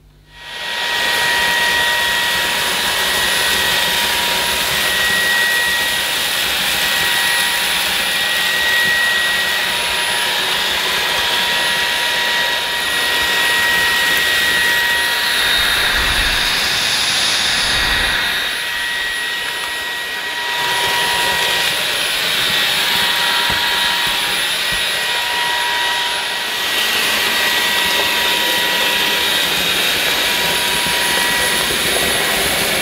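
Halo Capsule cordless stick vacuum running steadily with a high whine while its floor head sucks up loose dry debris from a tiled floor. A couple of low knocks come from the floor head about halfway through.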